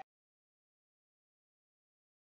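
Silence: the audio track drops to nothing.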